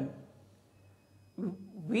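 A man's speech trailing off into a pause of near silence, then a drawn-out hesitation sound with a dipping pitch as he starts talking again.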